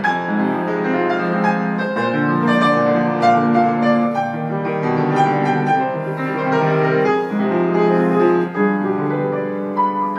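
Grand piano played solo, a steady stream of many quick notes in both hands with sustained chords underneath.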